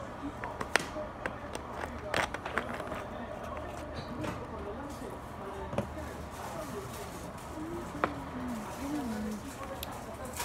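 Faint voices talking in the background over a steady low hum, with a few sharp clicks and knocks.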